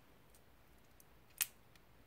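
Green slime squeezed by hand from a rubber glove into a bowl of glue: a few faint clicks, and one sharp, louder pop about one and a half seconds in.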